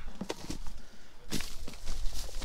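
Footsteps crunching through dry canola stubble, a few irregular crackling steps with one sharper one a little past halfway.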